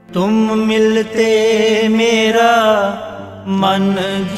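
Opening of a Sikh shabad kirtan: a sung voice holding long, wavering notes without words over a steady harmonium. The music enters suddenly and breaks briefly about a second in and again near the end.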